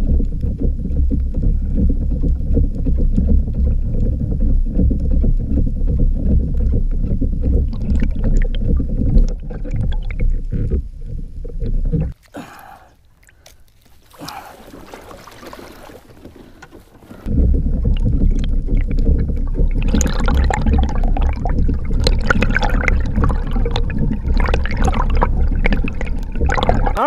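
Muffled underwater rumble of water moving around an action camera held below the surface. The rumble breaks off about halfway through, leaving a few seconds of much quieter sound while the camera is out of the water, then starts again when it goes back under.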